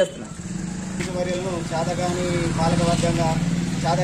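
A motor vehicle's engine running close by, a steady drone with a low pulse, getting louder about a second in and then holding.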